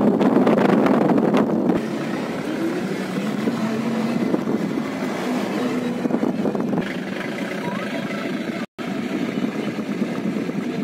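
Road and wind noise of a moving vehicle, a steady rumble and rush that is louder for the first couple of seconds and then eases. The sound cuts out for an instant near the end.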